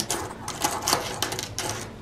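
Light, irregular clicks and taps of small gold metal keychain charms and clasps being handled and set down on a marble tabletop.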